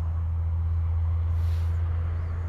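Steady low background rumble with a faint hiss above it.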